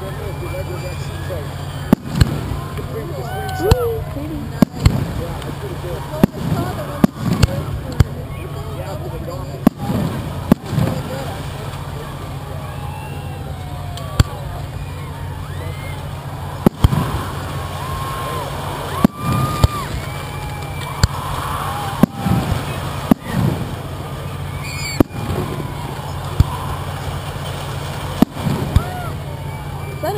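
Aerial fireworks shells launching and bursting, about twenty sharp bangs at irregular intervals of one to three seconds.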